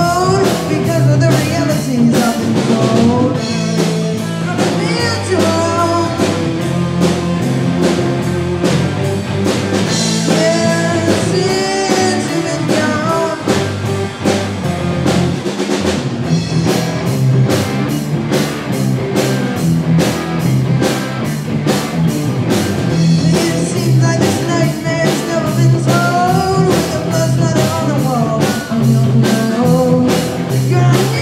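Live rock band playing a song: two electric guitars, bass guitar and drum kit keeping a steady beat, with a lead vocal sung over them.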